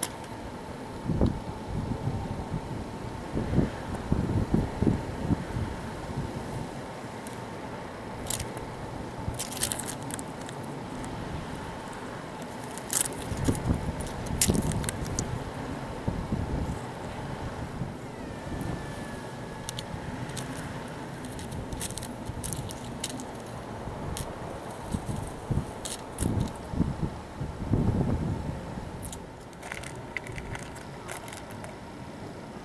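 Outdoor ambience with wind buffeting the microphone in irregular low gusts, and scattered sharp crackles and clicks.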